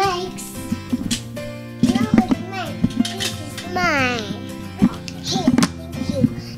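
A young child's voice, short playful calls and babble with one high sliding call about four seconds in, over background music with steady held tones. There are a couple of brief sharp clicks.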